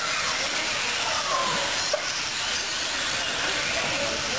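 Several 1/10-scale electric R/C buggies and trucks racing on an indoor dirt track: a steady hiss of motor whine and tyres on dirt, with faint whines gliding up and down in pitch as the cars speed up and brake.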